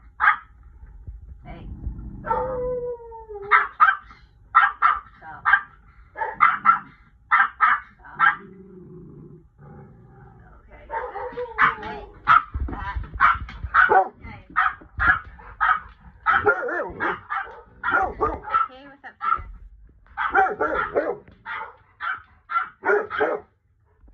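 A dog barking over and over in quick runs of short, sharp barks, with brief pauses between the runs.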